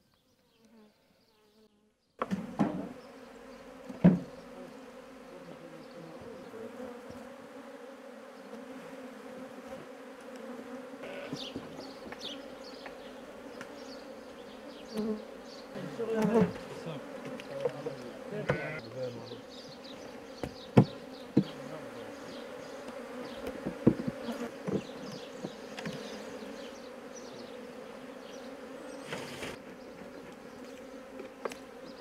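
Honeybees buzzing around opened hives in a steady, dense hum that starts about two seconds in. A few sharp knocks of the wooden hive frames and boxes being handled sound through it.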